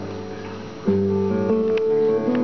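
Acoustic guitar played live in a song's instrumental opening. A ringing chord fades, then a louder chord is struck about a second in and is followed by changing notes.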